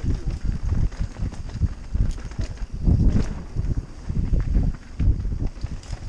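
Mountain bike descending a dirt singletrack at speed, heard from a helmet-mounted camera: a rumbling of tyres and frame over the rough ground, broken by irregular thumps as the bike hits bumps.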